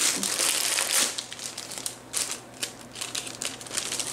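Crinkling of plastic packaging and a craft moss sheet being handled and unwrapped. It is loudest and densest in the first second, then gives way to scattered short rustles and small taps.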